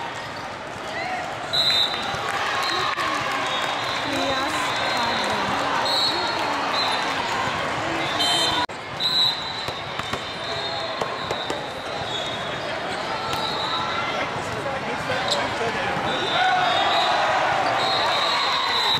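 Volleyball game in a large hall: many voices of players and spectators talking and calling, with sharp hits of volleyballs being played. The sound breaks off briefly about halfway through.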